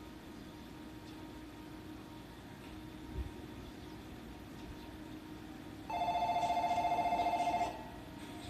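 Platform departure bell: an electric bell trilling loudly for just under two seconds near the end, the signal that the stopped train is about to leave. A steady low hum lies under it.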